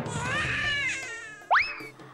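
Cartoon-style comedy sound effects: a wavering tone that rises and then sinks, then a quick upward whistle glide about one and a half seconds in.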